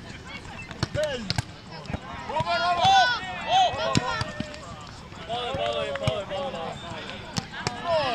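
A volleyball being played in a rally: sharp slaps as hands and forearms strike the ball, several times, with voices calling out across the sand in between.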